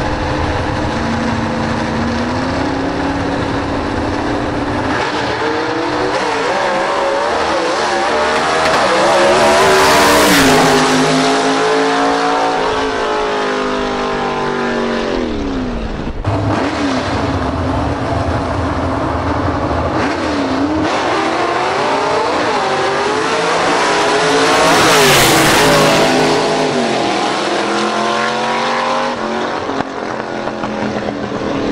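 Gasser drag-race cars' engines at full throttle, the note climbing and dropping in steps through gear changes. It is loudest about ten seconds in and again about twenty-five seconds in, each time falling in pitch as the cars pull away, with a sudden break in between.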